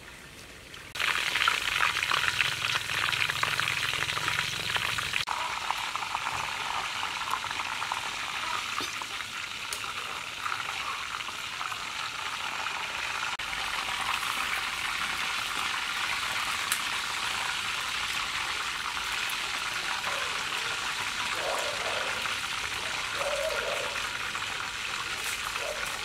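Chicken frying in hot oil: a steady crackling sizzle that starts about a second in.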